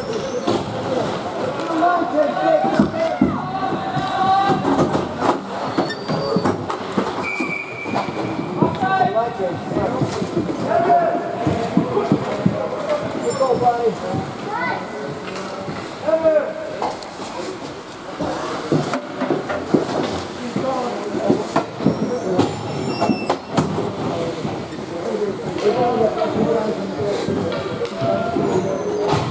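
Indoor ice rink during a youth hockey game: many overlapping voices of spectators and players, with scattered clacks and knocks of sticks and pucks and the scrape of skates on the ice. A short steady high tone sounds about seven seconds in.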